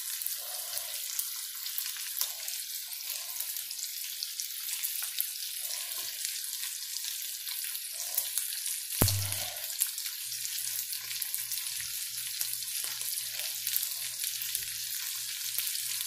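Browned sausage with freshly added chopped green pepper and onion sizzling and crackling in a nonstick skillet, a steady hiss as the vegetables soften in the fat. A single sharp knock about nine seconds in.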